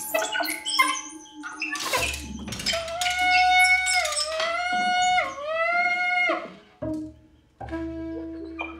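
Soprano saxophone in free improvisation: short squeaks and pops over the first two seconds, then one long held high note that sags in pitch twice and bends back up before cutting off sharply a little after six seconds. A low steady hum sits underneath.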